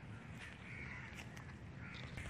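Faint bird calls, a crow-like caw twice, over a low outdoor background hum, with a few light clicks.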